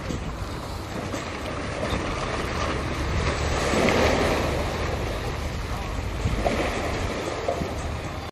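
Wind buffeting the microphone over open sea water, with a steady low rumble. About halfway through, water splashes loudly as a diver in scuba gear drops off a floating pontoon into the sea.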